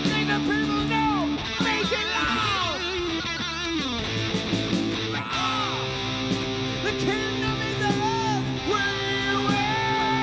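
Live metal band playing: an electric guitar lead with bent, wavering notes and long held notes over bass and drums.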